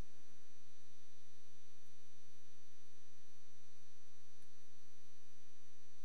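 Steady electrical mains hum in the recording, an unchanging buzz of many evenly spaced tones.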